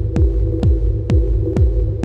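Electronic dance music from a DJ mix: a four-on-the-floor kick drum beats about twice a second, each kick dropping in pitch, over a steady droning chord.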